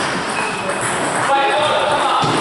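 Table tennis rally: celluloid-type ball struck by rubber paddles and bouncing on the table, short sharp pings, against the chatter of voices in a large hall.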